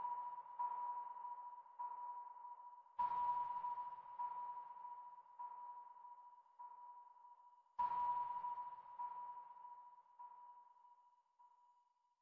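Sonar-like electronic ping from ambient background music: one high note struck about 3 seconds in and again near 8 seconds, each strike trailed by fainter echo repeats about once a second that die away. It fades out just before the end.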